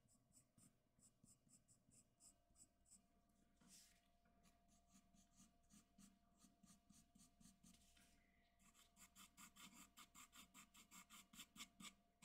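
Graphite pencil scratching on drawing paper in short, quick strokes, about four a second, as hair is sketched in. The strokes are faint at first and grow louder in the last few seconds.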